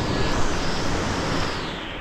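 Steady rushing wind noise on the microphone, easing off about a second and a half in.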